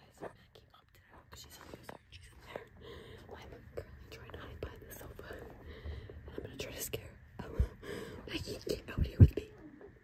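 Hushed whispering close to the microphone, with two brief dull thumps in the last few seconds.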